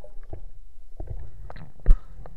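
Muffled underwater sound from an action camera in a waterproof housing: low rumbling water movement with scattered clicks and knocks. There is one loud thump near the end.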